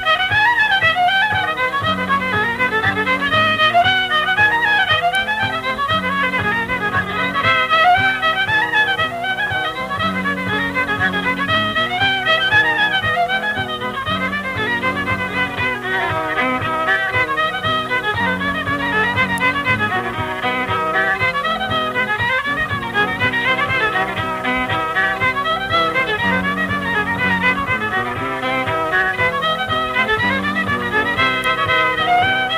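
An unaccompanied-sounding old-time fiddle tune in the key of C, played as a steady run of bowed notes. It is heard on an old home tape recording that has lost its highs.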